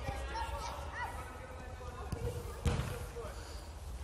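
Footballs being dribbled and kicked on artificial turf: scattered soft ball touches, with a couple of sharper kicks a little past halfway, over faint children's voices and a low rumble.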